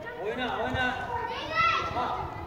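Children shouting and calling out to each other while playing, with a loud, high-pitched shout near the end.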